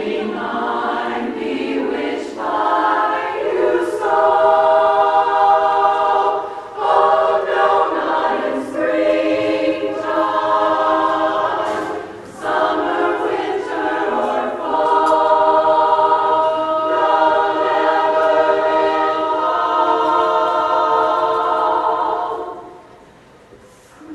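Women's barbershop chorus singing a cappella in four-part close harmony: sustained chords broken by short breaths, then one long chord held for several seconds in the second half. The chord is released about a second and a half before the end, leaving a brief lull.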